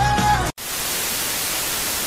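A song with singing cuts off abruptly about half a second in and gives way to a steady hiss of TV static, a video-edit transition effect.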